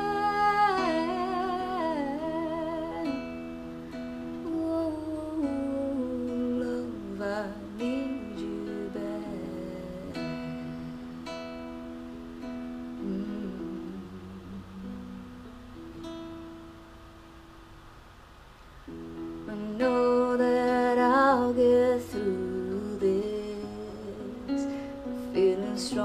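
Solo acoustic guitar plays an instrumental passage of a slow pop ballad. Wordless humming sits over it in places. The playing grows quiet about two-thirds of the way through, then builds up again a few seconds later.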